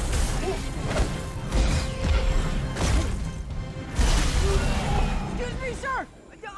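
Film battle soundtrack: dramatic score under loud crashing, surging water and heavy impacts, with big hits near the start, about a second and a half in, near three seconds and at four seconds. A voice cries out near the end.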